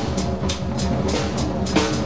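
Improvised free-jazz drum solo on a drum kit: sticks striking drums and cymbals in quick, irregular strokes, the cymbals ringing over the drums.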